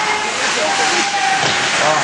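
Ice-rink ambience at a youth hockey game: a steady hiss of arena noise with distant voices of players and spectators faintly under it.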